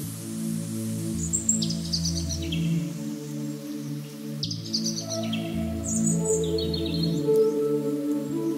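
Ambient background music of slow, sustained low notes that shift every second or so, with short bursts of high, falling bird-like chirps about a second in, around the middle and near the end.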